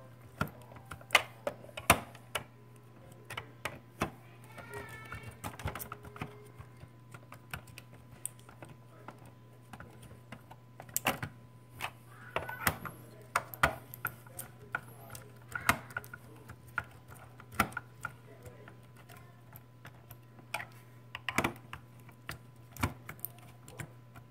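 Irregular clicks and taps of a hand screwdriver working screws into the plastic housing of an incubator, over a low steady hum.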